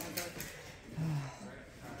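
A quiet voice: a short, low murmur about a second in, with a few faint clicks near the start.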